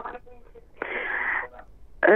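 A breathy rush of noise over a telephone line, lasting under a second and starting about a second in, most likely the caller breathing out into the handset; faint voice sounds come through the line just before it.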